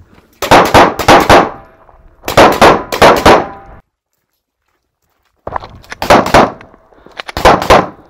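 Rapid strings of pistol shots from a 9mm Major open-division Glock: two quick strings of several shots each, a sudden drop to silence, then two more strings near the end.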